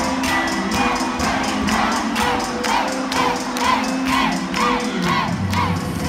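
Dance music with a steady beat playing in a large gym, under a crowd cheering and shouting. From about two seconds in, a short swooping note repeats in the music.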